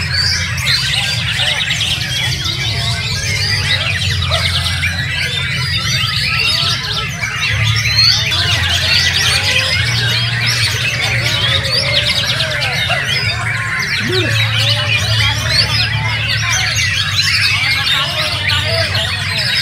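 Many caged white-rumped shamas (murai batu) singing at once, a dense overlapping chorus of whistles, trills and chattering phrases, with a low note underneath that shifts pitch every second or two.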